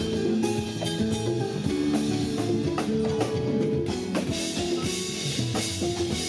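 Live band playing an instrumental passage, drum kit and electric guitar over a steady beat, with no singing.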